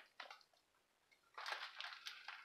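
Faint crinkling of a plastic-bagged comic book being handled and moved aside. It comes after a near-silent pause and begins a little past halfway.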